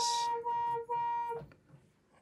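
Buchla 200 modular synthesizer playing a steady pitched tone with a bright, noisy start, pulsing as three notes of about half a second each and cutting off about a second and a half in.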